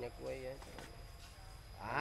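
A brief hummed or drawn-out voice sound, then a quiet stretch of faint background murmur, with a man starting to speak near the end.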